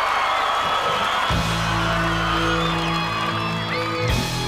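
Crowd cheering as a rock band opens its song. About a second in, a long held chord on electric guitar and bass comes in under the crowd noise.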